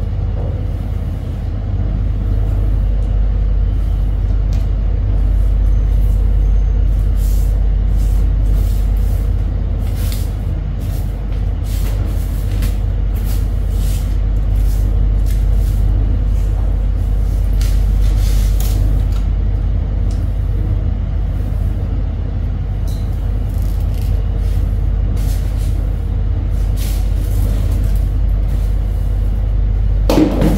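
Soft grass broom sweeping a tiled floor in short, irregular swishing strokes, heard over a loud, steady low rumble.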